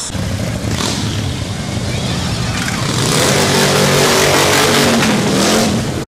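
Motorcycles riding past with loud, low exhaust, the sound growing louder from about halfway through as the bikes come closer, then cutting off suddenly at the end.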